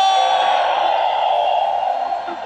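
A loud held vocal note that dissolves into a dense roar of voices, slowly fading toward the end.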